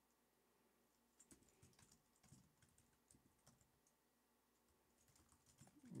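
Faint computer keyboard typing: a scattered run of keystrokes starting about a second in, with a few more near the end.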